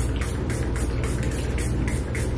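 A pump-spray bottle of facial mist sprayed over and over in quick hissing spritzes, about four a second, over a steady low hum.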